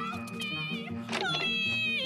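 Cartoon soundtrack music with a high, wordless voice-like cry over it. The cry settles into one held note through the second half.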